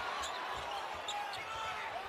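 Basketball arena ambience: a steady hubbub of crowd and court noise, with a basketball thudding on the hardwood floor now and then.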